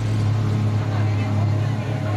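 Passenger speedboat's engines running with a steady low drone, heard from inside the cabin, over the rushing of water along the hull.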